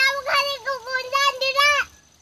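A young girl's high voice singing a short phrase of held notes in a sing-song line, breaking off just before the end.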